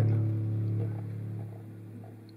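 Low, steady hum with overtones from the Quantum Resonance control box's table-vibration output, fading away over the two seconds as its volume knob is turned.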